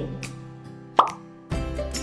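Background music with a single quick rising "plop" sound effect about a second in, a slide-transition cue as a new title pops onto the screen. The music swells again shortly after.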